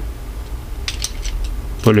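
A few light plastic clicks about a second in, as the detachable head frame of a three-head rotary electric shaver is handled and snapped back onto its body.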